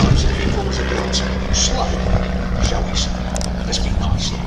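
Vintage single-engine propeller trainer flying overhead, its de Havilland Gipsy Major inline-four piston engine giving a steady drone.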